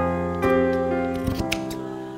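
Scissors snipping a few times through cotton fabric strips, over background music with held notes.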